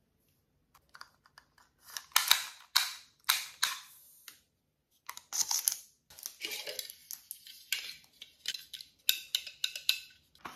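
Small plastic gadgets handled up close: a run of light clicks and short scratchy rustles, starting about a second in.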